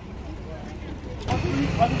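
People talking outdoors over a low vehicle engine hum. A little over a second in, the voices and the hum get suddenly louder.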